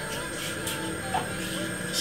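Quiet background music with steady held tones.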